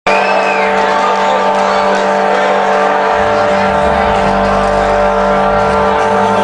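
Rock band playing live through a venue PA: a loud, sustained droning intro of held tones with a pitch sweep in the first second, and deep bass swelling in about three seconds in.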